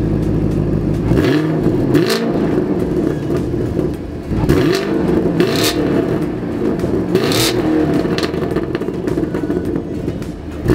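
2019 Chevrolet Camaro SS 1LE's 6.2-litre V8 running through its quad-tip exhaust, idling steadily for about a second and then revved in a series of short blips, each rising and dropping back to idle.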